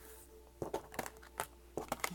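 A deck of oracle cards being shuffled and handled by hand: a run of about six short, sharp card clicks and snaps in the second half, as a card is drawn and laid on the table.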